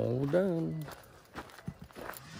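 A man's voice making one drawn-out vocal sound that rises and then falls in pitch, lasting about a second, followed by a few faint clicks like footsteps.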